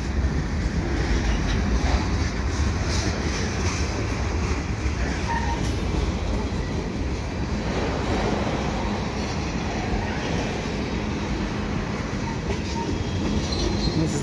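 Freight cars of a CN mixed merchandise train rolling past on steel wheels: a steady rumble of wheels on rail.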